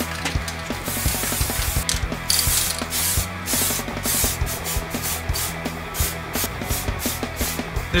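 Aerosol spray-paint can hissing in many short bursts, stopping and starting again and again, as black paint is sprayed onto a handlebar, over low background music.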